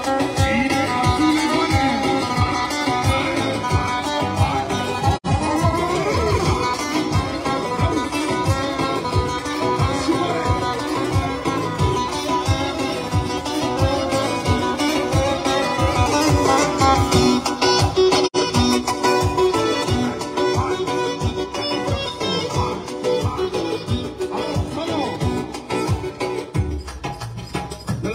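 Live Romani wedding-band instrumental: acoustic guitar and clarinet playing a fast melody over a steady dance beat on a large strapped bass drum. The sound cuts out for an instant twice, about five seconds in and past halfway.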